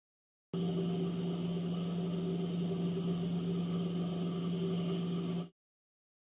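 Steady electric motor hum of an industrial sewing machine left running without stitching, starting suddenly about half a second in and cutting off abruptly near the end.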